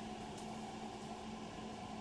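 Quiet room tone: a faint, steady hum with a low even hiss.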